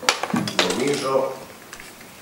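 A sharp click at the very start and a few quick clicks or knocks, then about a second of a person's voice, hesitant and without clear words, before the sound drops to room noise.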